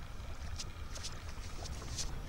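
Faint ambient noise: a low rumble with scattered light ticks.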